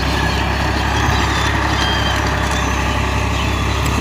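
Farm tractor's diesel engine running steadily as it pulls a tillage implement across a field.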